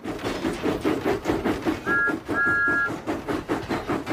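Cartoon steam-engine sound effect: rhythmic chuffing at about five beats a second, with a short two-note whistle toot and then a longer one about two seconds in.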